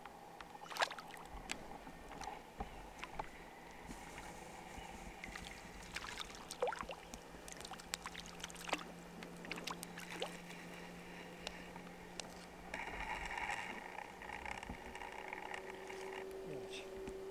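Faint lakeside ambience: small water sounds with scattered short clicks and a few high chirps, and a faint steady low hum through the middle.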